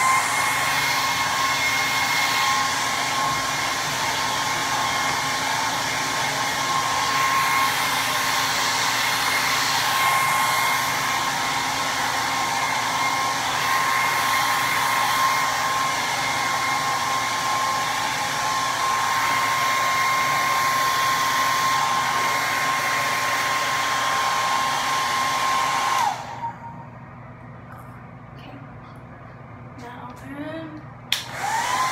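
Handheld hair dryer running steadily on wet hair, a loud rush of air with a steady high motor whine. It is switched off about 26 seconds in, the whine falling in pitch as it winds down.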